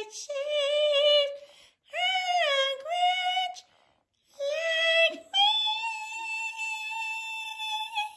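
A high voice singing long drawn-out notes in four phrases, the pitch bending and wavering within them, ending on one note held for nearly three seconds.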